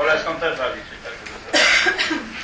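Indistinct talking, then a short, loud cough about one and a half seconds in.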